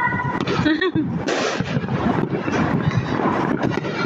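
Many fireworks and firecrackers going off at once: a dense, continuous crackle of pops and bangs, with people's voices mixed in.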